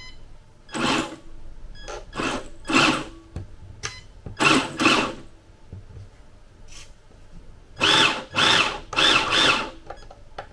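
Electric drive motor and gearbox of a 1:10 scale RC Hummer H1 whirring in about nine short blips of throttle, in three groups. The pitch rises and falls with each blip as the wheels spin up and stop.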